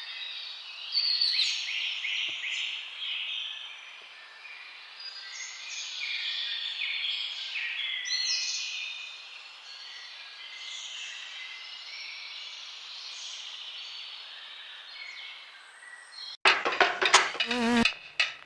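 Insects chirping and buzzing in repeated short high-pitched phrases, with nothing in the low range. About a second and a half before the end it cuts abruptly to a much louder stretch of sharp clicks and knocks.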